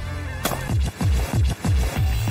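Electronic background music with a run of deep bass thumps. A single sharp crack about half a second in is a shotgun firing at a clay target.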